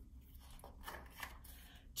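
Faint rustle and a few soft ticks of a hardcover picture-book page being turned by hand.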